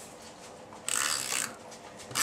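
Snail adhesive tape runner drawn across cardstock: one short zipping rasp about a second in, lasting about half a second.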